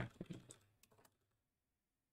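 Computer keyboard typing: a few faint keystrokes in the first second, then the typing stops.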